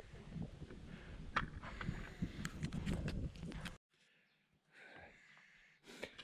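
Outdoor rumble, like wind or handling on the microphone, with a few scattered sharp clicks and knocks. About four seconds in it cuts off suddenly to near silence.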